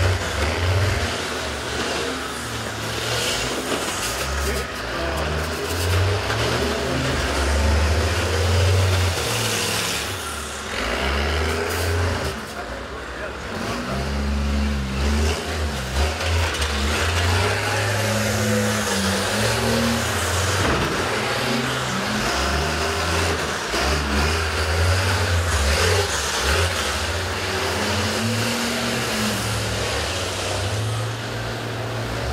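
Large school-bus engines running and revving in uneven surges as the derby buses manoeuvre. A background of voices runs under the engines.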